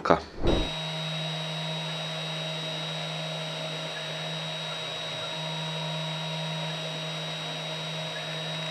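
Spindle motor of a small CNC engraving machine running steadily while its engraving bit cuts markings into a plastic enclosure lid: a steady low hum with a thin high whine.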